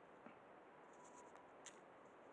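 Near silence: a low steady hiss with a couple of faint clicks.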